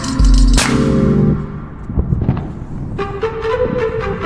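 Background music: a track with a bass-heavy beat that drops out about a second in, leaving a quieter break, before a held melody line comes in near the end.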